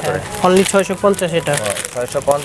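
Clear plastic jewellery packets crinkling as they are handled, under people talking.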